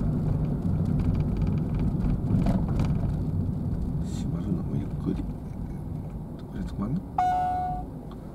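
Car cabin noise, engine and road rumble, growing quieter as the car slows down. Near the end, a single electronic beep of about half a second.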